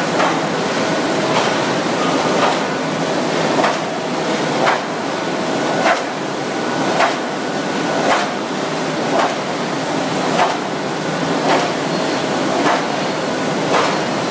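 Modified Planeta sheetfed offset press running on metal sheets: a steady machine noise with a sharp knock about once a second, evenly in time with the press's cycle.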